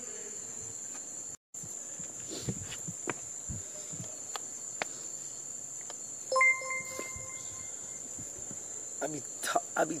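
Crickets chirping in a steady high trill, with a short beep about six and a half seconds in.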